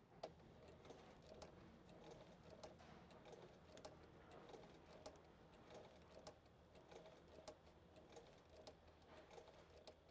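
Sewing machine stitching slowly, heard faintly: a light, fairly regular ticking of the needle over a low steady hum.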